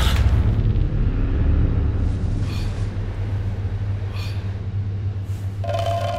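A low, steady rumbling drone of film score or sound design, with two faint swishes about two and a half and four seconds in, and a held tone coming in near the end as a build-up.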